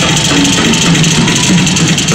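Loud live rock music with a drum kit to the fore, played through a concert PA and recorded from the crowd, so the mix is dense and rough.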